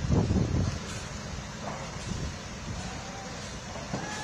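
Wind buffeting the microphone: an uneven low noise, with a stronger gust at the very start.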